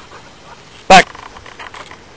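A man shouting the single retriever command "Back!" once, loud and short, about a second in: the cast that sends the dog out on a blind retrieve. Faint background otherwise.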